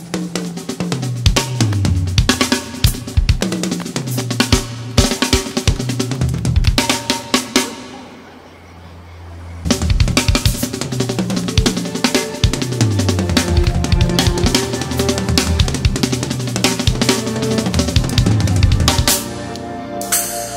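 A drum kit played fast and busy: bass drum, snare and cymbal strikes with pitched drum fills stepping down in pitch. The playing thins to a quieter low sustain about eight seconds in, then resumes at full density until near the end.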